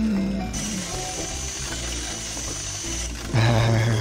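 Power grinder whirring and grinding against a robot's metal body, with background music underneath.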